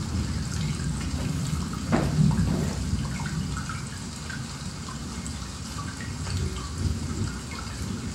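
Recorded rain and thunderstorm sounds from a sleep app played through a speaker with the bass boosted: steady rain with scattered drops, and a crack of thunder about two seconds in that rolls into a low rumble.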